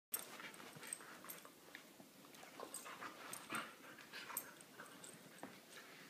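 Two dogs playing tug with a rope toy: soft, irregular scuffling and mouthing sounds with small dog noises mixed in.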